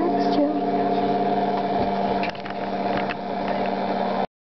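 A steady hum of several held tones, with a short voice-like sound at the start and a few sharp clicks a little after two and three seconds in.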